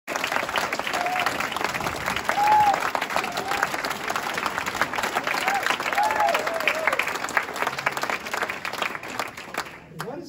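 Audience applauding, dense clapping from a roomful of people with a few short voices calling out over it. The clapping cuts off suddenly just before the end.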